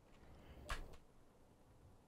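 Near silence: room tone, with one faint brief noise about three-quarters of a second in.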